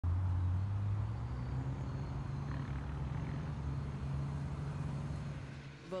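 GAZ-66 army truck's engine running as the truck drives along, a steady low drone that is loudest in the first second and eases off near the end.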